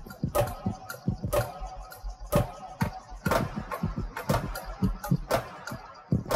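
A looping breakbeat built from found sounds: low thumps and a sharp crack about once a second, in a steady rhythm.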